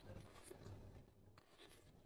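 Faint close-miked eating sounds: biting into and chewing a piece of food, with small wet mouth clicks and crackles.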